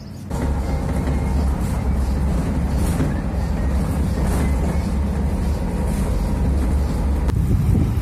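City bus driving, heard from inside the passenger cabin: a steady low engine and road rumble with a faint hum.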